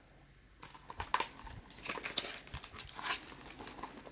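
A picture book's paper page being turned by hand, rustling and crinkling. It starts about half a second in and goes on with small clicks for about three seconds.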